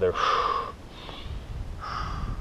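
A man's heavy breathing during a vigorous yoga movement: a forceful breath of about half a second at the start, then another beginning near the end, over a low rumble.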